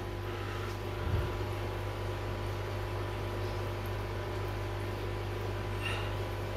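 Steady low electrical hum of running aquarium equipment, with a fainter higher tone over it. A soft bump of handling about a second in.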